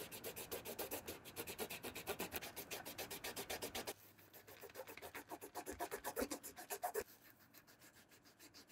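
A wad of cotton on a metal tool scrubbing the rubber midsole of a white sneaker in rapid, even back-and-forth strokes. The strokes change tone about halfway and stop near the end.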